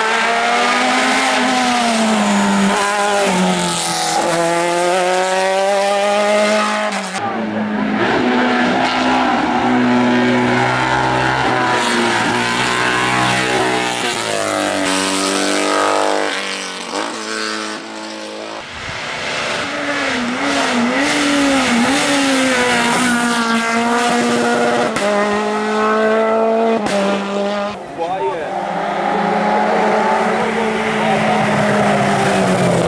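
Racing car engines at full throttle, each rising in pitch and then dropping back at a gear change, again and again. The sound breaks off and starts afresh with a different car a few times.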